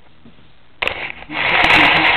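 Loud rustling and knocking handling noise from a handheld camera being moved and set down, starting suddenly about a second in, with a few sharp clicks near the end.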